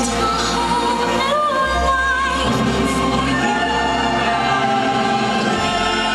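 The show's soundtrack over the park loudspeakers: orchestral music with singing voices and a choir holding long, wavering notes.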